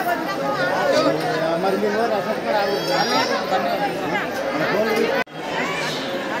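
A crowd of people talking over one another: a dense babble of many voices. It breaks off for an instant near the end, then carries on.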